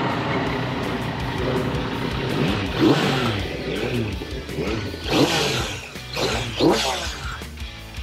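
Yamaha MT-09 inline-three motorcycle engine revved while the bike stands parked. The pitch climbs and falls back with each blip, and the strongest revs come about three, five and six and a half seconds in.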